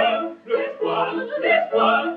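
A soprano and two male opera voices singing together in a comic operetta trio, in short phrases broken by brief pauses.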